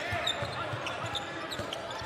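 A basketball being dribbled on a hardwood court, a series of low thuds, over the steady murmur of the arena crowd.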